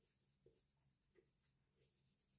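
Near silence: room tone, with two barely audible soft ticks about half a second and a little over a second in.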